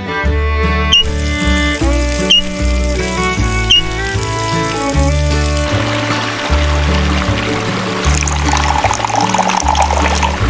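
Background music with a steady beat throughout. From about halfway through, water pours into a small plastic pond, growing louder near the end.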